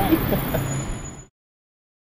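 Town-street background noise with a low traffic rumble and a brief bit of a man's voice near the start, fading out to silence a little over a second in.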